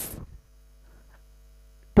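Low, steady mains hum during a pause in a man's speech, with the end of his last word fading out at the start and his next word beginning right at the end.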